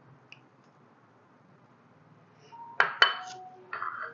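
Small ceramic bowls clinking against each other on the counter: a quiet start, then two sharp ringing clinks close together about three seconds in, and a softer knock near the end.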